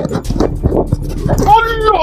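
A man choking and gasping under a hand gripping his throat: irregular rasping, throaty sounds, then a voice rising clearly near the end.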